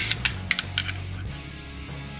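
A quick run of light metallic clicks as an AK recoil spring and guide rod are handled and seated in the steel receiver, over soft background music. The clicks fall within the first second.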